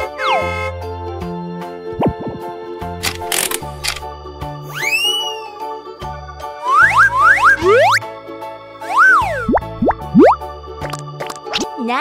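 Bouncy children's background music overlaid with cartoon sound effects: boings and slide-whistle glides that rise and fall, several in quick succession around seven seconds in, and a short whoosh about three seconds in.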